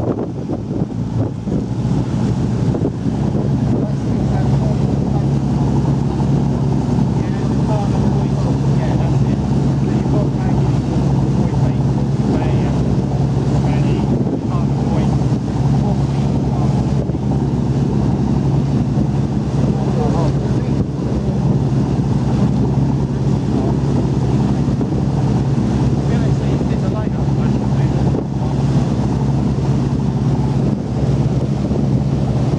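A pleasure boat's engine running with a steady low drone that grows louder about three seconds in, with wind buffeting the microphone throughout.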